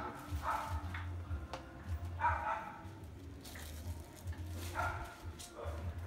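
A dog barking a few times at intervals.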